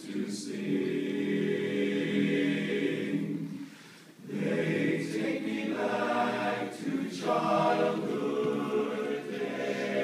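Men's barbershop chorus singing a cappella in close harmony, holding sustained chords, with a short break about four seconds in before the singing resumes.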